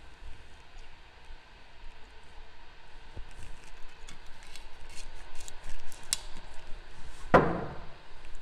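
Glass bottle of triple sec being handled over a metal cocktail shaker: a run of light clicks as its cap is worked at the neck, then one solid knock as the bottle is set down on the table near the end.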